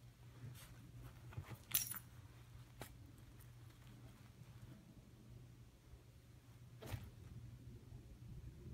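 A dog scrabbling and shifting on a sofa cushion, with a few brief metallic clinks, the loudest about two seconds in and another near the end, over a steady low hum.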